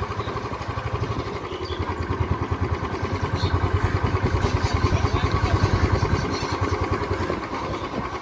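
A small motorcycle engine running at low speed, a steady fast low throb with road and air noise over it.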